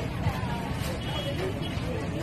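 Busy market ambience: indistinct voices chattering over a steady low rumble.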